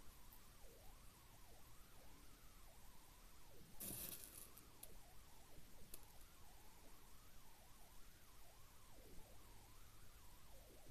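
Near silence, with a faint wavering tone throughout. About four seconds in comes a short rustle as size 8 seed beads are picked from a small plastic container, and a small click follows near six seconds.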